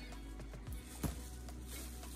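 Quiet background music with a steady low bass line, and a soft click about a second in.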